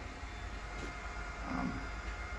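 Steady low hum and hiss of the small room's cooling equipment, an air conditioner and running network gear, with a brief spoken "um" near the end.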